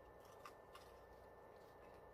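Near silence: room tone with a few faint short clicks of chewing crunchy fried chicken wings.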